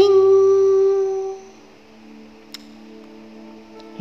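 A voice sings out a drawn-out "ting" on one steady pitch for about a second and a half, acting out a sound effect, over soft background music.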